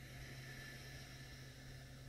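Near silence: room tone of a steady low electrical hum and faint hiss.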